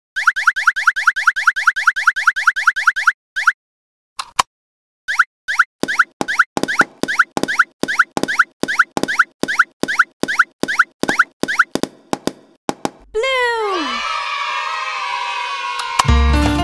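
Cartoon sound effects of balls popping in and out of holes: a fast run of short rising pops, about seven a second, for some three seconds, then a gap broken by one or two single pops. A second, longer run of pops follows as the balls come up out of the holes. Near the end a falling glide settles into a steady, shimmering tone.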